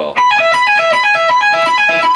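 Electric guitar playing a fast, even, repeating three-note lead figure high on the neck: the 19th fret of the high E string picked and pulled off to the 16th, then the 17th fret on the B string, cycled over and over. It starts a moment in.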